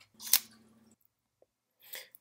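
A single sharp click about a third of a second in, inside a brief rush of noise with a low hum under it that fades within the first second.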